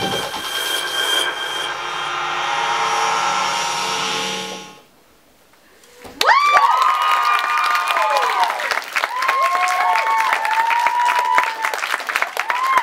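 Performance music holds a final sustained chord and stops about five seconds in. After a short pause, the audience breaks into applause with high whoops and cheers.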